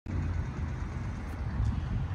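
Low, steady rumble of a car engine idling.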